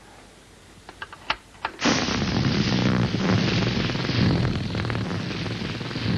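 A few small clicks, then about two seconds in a long, loud, crackling fart sound with a low pulsing rumble: a comic flatulence impression of a man in the bath, given as a sound check.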